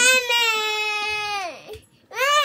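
A toddler crying in a tantrum: one long high wail that holds steady, then falls in pitch and dies away about one and a half seconds in.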